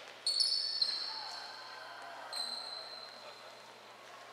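Referee's whistle blown twice on a basketball court to stop play: a sharp high blast just after the start lasting under a second, then a second, shorter blast a little past two seconds in.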